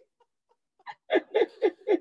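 A woman laughing in short, evenly spaced bursts that start about a second in, after a near-silent pause.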